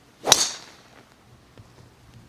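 Golf tee shot: the club swishes down and strikes the teed ball with a single sharp, high crack about a third of a second in, ringing briefly as it fades.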